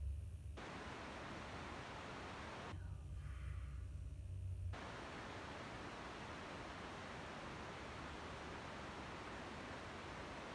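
Steady, even hiss like static that cuts in abruptly, drops out for about two seconds a few seconds in, then comes back unchanged. In the gap a low rumble, typical of wind on the microphone, is heard.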